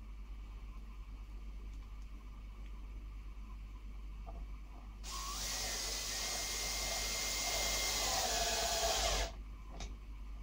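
Bosch cordless drill-driver running a self-centering drill bit to drill a pilot hole through a brass latch's screw hole into pine. The motor whine starts about halfway through, rises as it spins up, drops in pitch near the end, and stops after about four seconds.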